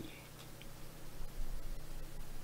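A few faint computer mouse clicks over a low, steady electrical hum.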